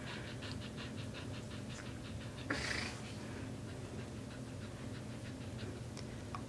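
Samoyed panting, a quick, even run of soft breaths at about five a second, with one louder rush of breath or hiss about two and a half seconds in.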